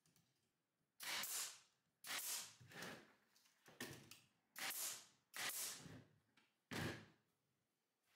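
Pneumatic nailer firing nails into a pine 2x3 table frame: about seven sharp shots spaced roughly a second apart, each trailing off briefly.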